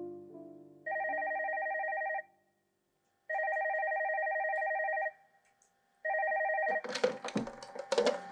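Desk telephone ringing three times, each ring a rapidly trilled tone. The third ring is cut short about seven seconds in as the handset is picked up, with a clatter of handling.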